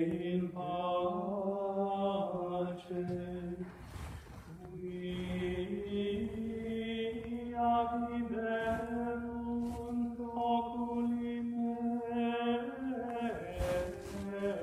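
Latin plainchant from a Tridentine Mass: a single melodic line sung on long, held notes, with a brief break for breath about four seconds in.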